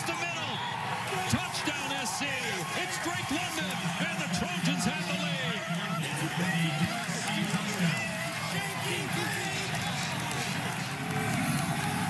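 Game-broadcast audio of many overlapping voices with music underneath, after a touchdown.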